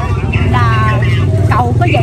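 A voice speaking briefly over the steady low hum of an engine running at idle, which is the loudest thing throughout.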